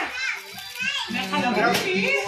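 Children's voices chattering and calling out, with a short rustle of wrapping paper being torn off a shoebox near the end.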